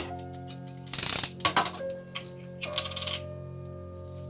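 Soft background music plays throughout. Over it come a sharp click at the start and two short bursts of scraping or rustling, about a second in and about three seconds in: hand-work noises at a guitar repair bench.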